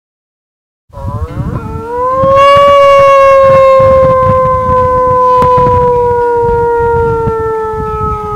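A man imitating a wolf howl through cupped hands: short rising notes about a second in, then one long howl that swells and slowly sinks in pitch.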